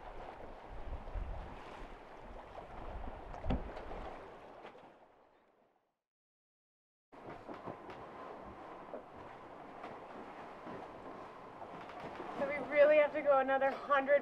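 Wind and sea noise on a sailing catamaran beating upwind through chop, with a low wind rumble and one sharp thump about three and a half seconds in. The sound fades to silence a little past the middle, returns as a steady hiss of wind and water, and a man's voice comes in near the end.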